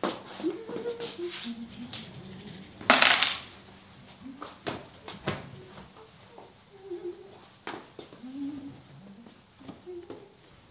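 Small metallic clinks, clicks and knocks of household things being handled in a hallway, with a short, loud rustling swish about three seconds in.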